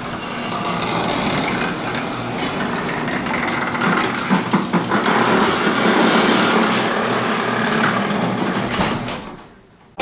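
Tonka 12V electric ride-on dump truck driving: a steady whirring from its battery-powered drive motors and gearboxes with a low hum underneath, fading away about nine seconds in.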